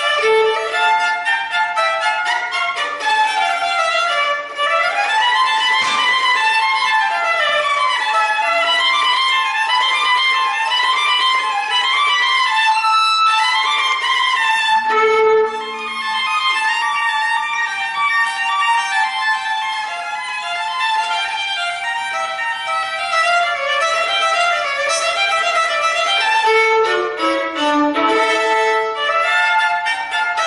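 Solo violin played unaccompanied: a continuous stream of quick running notes, dipping now and then into the lower register.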